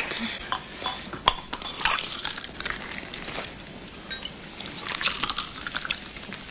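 Champagne being poured into a glass flute, fizzing and foaming, with a few light ticks.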